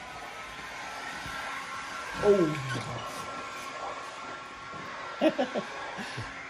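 A steady electric whine with a constant high tone, like a blower or hair-dryer-type motor running in the background. Short snatches of voices come about two seconds in and near the end.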